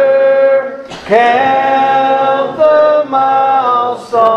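Voices singing a hymn in long held notes, pausing briefly for breath about a second in and again near the end.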